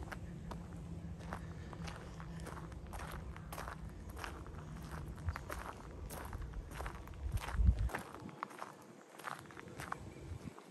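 Footsteps on a bark-chip garden path at a steady walking pace, about two steps a second. A low rumble runs underneath and stops with a low thump about eight seconds in.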